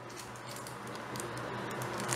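Faint handling noises: soft rustling and a few small clicks as a paper cup is put aside and foil drink-mix sachets are picked up.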